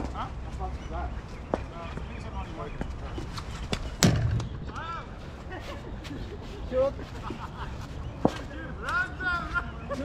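A cricket ball hitting the bat in a practice net: one sharp crack about four seconds in, with a few lighter knocks before and after.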